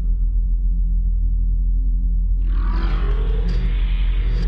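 TV channel ident sound design: a deep, steady rumbling drone, joined a little past halfway by a rising swell of brighter, shimmering sound.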